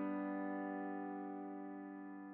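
A sustained piano chord from FL Studio's Stage Grand virtual piano, ringing and fading slowly with no new notes struck.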